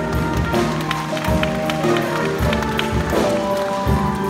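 Jazz big band playing, with saxophones, trumpets and trombones holding chords over repeated low bass notes and regular percussive hits.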